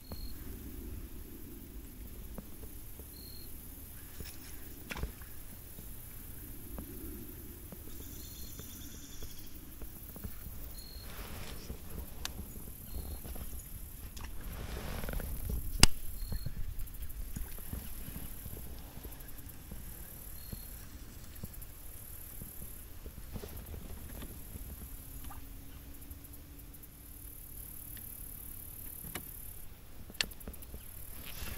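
Wind rumbling on the microphone, with scattered small clicks and knocks from handling a baitcast rod and reel; the loudest is a sharp click about halfway through. Short high peeps recur every few seconds.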